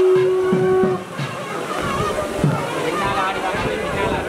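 Festival crowd voices mixed with traditional temple music: a held steady note stops about a second in, and a busy mix of voices and music follows.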